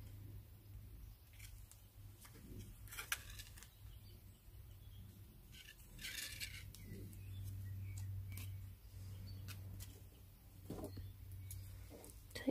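Faint, scattered clicks and short scrapes of thin copper wires being handled and bent around a pencil on a stone pendant, over a steady low hum.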